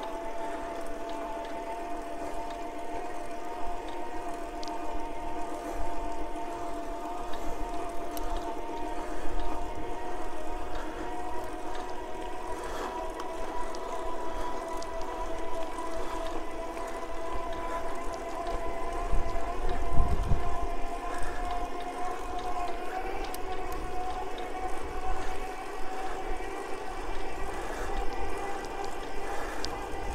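Electric bicycle motor whining steadily while riding, its pitch creeping slowly upward as the bike speeds up, over wind rumble on the microphone that swells briefly about twenty seconds in.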